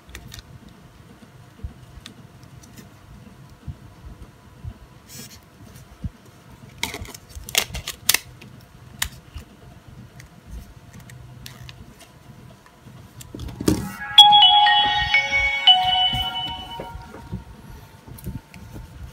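Nokia N73 playing its startup tune through its small built-in speaker as it boots: a short melody of several clear notes, about three seconds long, starting about fourteen seconds in and the loudest sound here. Before it, a few faint clicks from the phone being handled.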